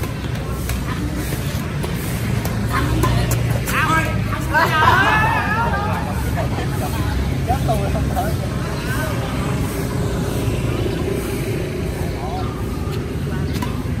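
Steady low rumble of city traffic behind an outdoor badminton game, with a few sharp racket hits on the shuttlecock in the first couple of seconds and again near the end. A burst of players' voices calling out comes about five seconds in.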